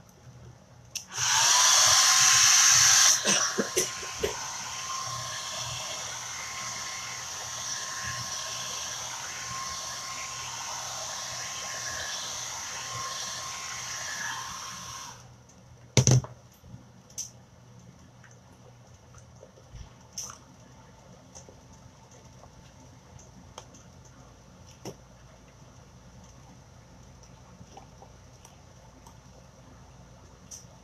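Handheld dryer blowing air over wet chalk paste to dry a layer, running for about fourteen seconds with a steady motor whine. It is loudest for the first two seconds, then runs lower until it cuts off. A single knock follows a second later.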